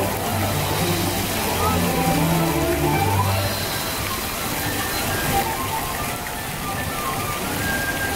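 Fountain jets splashing and churning the surface of a pond, a steady rain-like spatter of water, with background music of held low notes playing over it.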